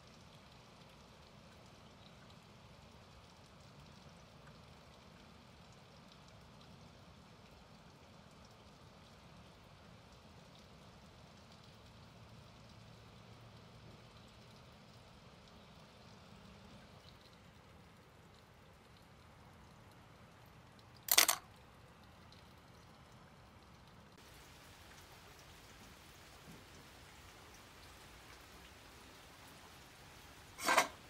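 Faint steady background hiss, with one brief sharp click about two-thirds of the way through.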